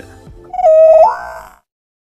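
Short buzzy transition sound effect: a loud held tone that jumps up in pitch about a second in, then fades and cuts off.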